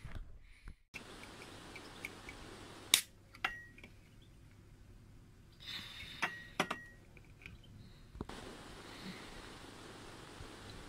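A Pepsi can opened by its ring-pull: clicks and a short hiss of escaping gas about six seconds in. Before that, a few light knocks and clinks come at about three seconds, and a low thump follows near the end.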